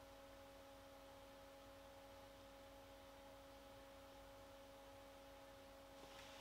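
Near silence: room tone with a faint, steady hum of a few constant tones.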